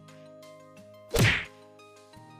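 Soft background music with held notes, and about a second in a single loud, short whack: a sound-effect hit.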